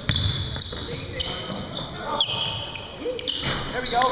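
Basketball game on a hardwood gym floor: the ball bouncing and short high squeaks of sneakers, with players' voices calling out near the end.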